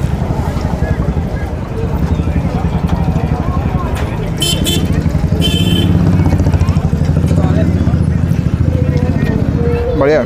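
A small engine running steadily close by, a low, fast throb that grows louder about six seconds in. It sits over the chatter of a crowded street, with two short high-pitched sounds cutting in around the middle.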